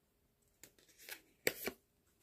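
A tarot card is drawn from the deck and laid down on the table: a few short, faint rustles and slaps of card against card and surface, the loudest pair about a second and a half in.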